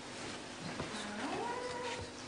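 A short, faint whimper from a voice, rising in pitch about a second in and then held. It reads as a child character's frightened whine.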